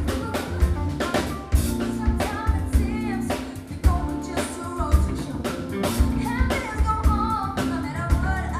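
Live band performance: female voices singing a melody over a drum kit keeping a steady beat, with a band accompanying.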